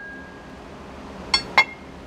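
Two sharp metallic clinks about a quarter second apart, about a second and a half in, as the steel plates of a Ford V10 motor mount are set together. Otherwise low room noise.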